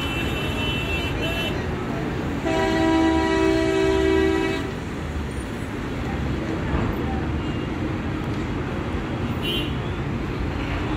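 Horns honking over a steady rumble of engines: a higher-pitched horn sounding for about a second and a half, then a loud, low two-note horn blast lasting about two seconds, and a short high beep near the end.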